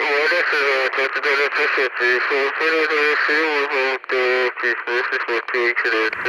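A high-pitched voice talking quickly, thin and tinny like speech over a radio, with no bass.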